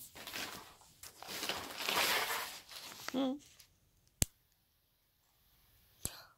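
Rustling and handling of plush stuffed toys on a quilted bedspread as a capuchin monkey wrestles them, for about three seconds. A short voiced sound follows, then a single sharp click a little after four seconds.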